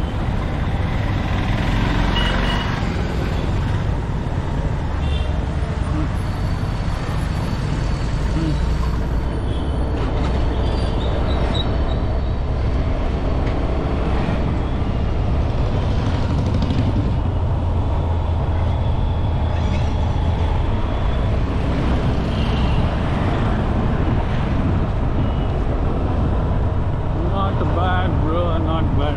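Steady street-traffic and riding noise while moving along a road: a low engine and wind rumble, with passing motorbikes and scooters and a few short high tones through it.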